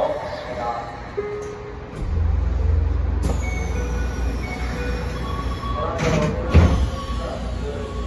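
Train standing at a platform: a steady low hum sets in about two seconds in, with a string of short held tones at changing pitches over it, and a loud knock about six and a half seconds in.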